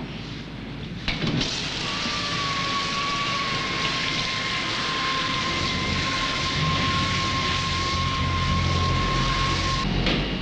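Printing-plate machinery running: a click about a second in, then a steady rushing hiss with a thin high whine over it, and a low rumble growing in the second half; it cuts off abruptly at the end.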